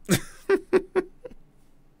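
A man laughing briefly: a breathy exhale, then three quick 'ha' pulses within the first second.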